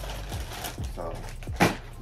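Plastic shopping bag rustling and crinkling as it is handled, with one sharp, louder rustle or knock about a second and a half in.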